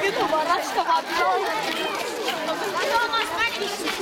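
Several boys' voices talking over one another in unclear chatter.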